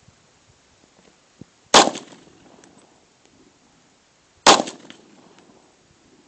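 Sig Sauer SP2340 pistol in .40 S&W fired twice, the shots about two and a half seconds apart, each followed by a short echo.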